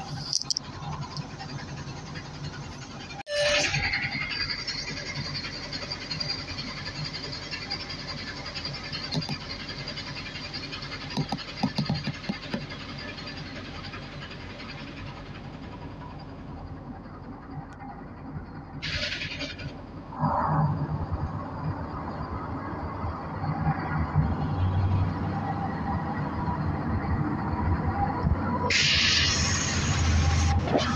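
NefAZ 5299 city bus running on the move, a steady engine drone with road noise that grows louder in the last third. The sound breaks off abruptly about three seconds in, and there are two short hisses, one past the middle and one near the end.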